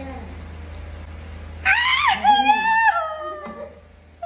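A loud, high-pitched wailing cry about two seconds long, starting a little before halfway: it rises, dips, holds level, then slides down and trails off.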